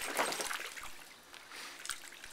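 Water trickling and splashing out over the pressed-down rim of an inflatable kiddie pool as a Boston terrier pushes on the wall with his front paw. The sound is strongest at first and dies down toward the middle.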